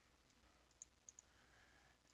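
Near silence: faint room tone with three faint computer mouse clicks about a second in.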